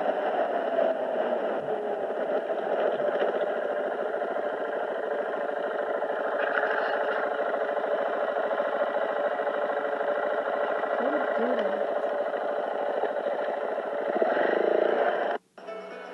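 Motorcycle engine running during a ride, with music over it. The sound is steady and cuts off suddenly near the end.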